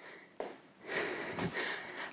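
A woman breathing audibly from exertion during a cardio exercise, two breath sounds close together in the second half, with no voice.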